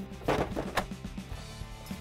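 Plastic refrigerator ice container pushed into its rails, knocking twice as it is lifted and seated in place, over soft background music.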